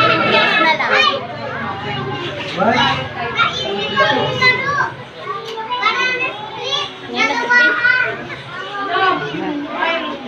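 Many young children's voices chattering and calling out at once, without pause.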